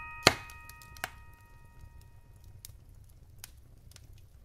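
Wood fire crackling in a fireplace: a sharp, loud pop about a quarter second in and a smaller pop about a second in, then small scattered crackles over a low rumble of flames. The last chime notes of the music fade out at the start.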